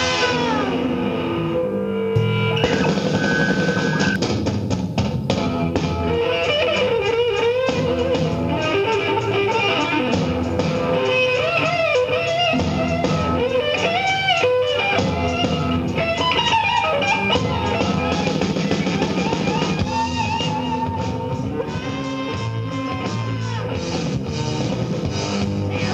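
Hard rock band recorded live, playing an instrumental passage: an electric guitar lead with bending notes over bass and drums, without vocals.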